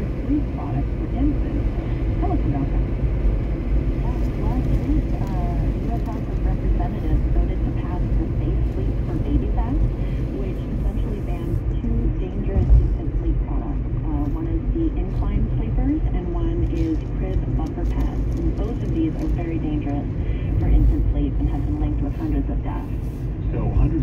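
Steady road and engine rumble inside a moving car's cabin, with muffled talk from the car radio underneath.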